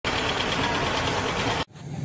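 A loud, steady rush of noise that cuts off abruptly about one and a half seconds in, followed by a low droning hum like an engine idling.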